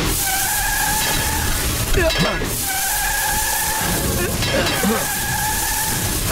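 Car tyres screeching in three long, steady squeals, each about one and a half seconds, with short breaks between them.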